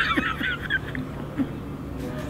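Two men laughing heartily, a high, wavering laugh that trails off about a second in.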